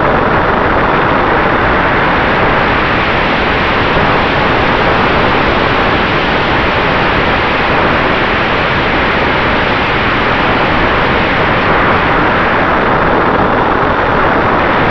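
Steady, loud rushing noise heard from a camera riding on a Freewing F-86 Sabre RC jet in flight: airflow over the camera mixed with the model's electric ducted fan, with a faint steady tone beneath.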